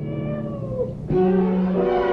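A cat meows once, its pitch rising and then falling. About a second in, a held chord of the film's score comes in.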